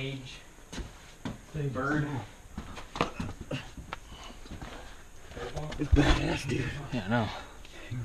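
Indistinct voices of people crawling through a tight cave passage, mixed with scuffs and knocks on rock and a heavy thump about six seconds in.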